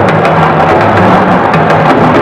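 Drumming with a dry, wood-block-like clack, loud and continuous over a dense din.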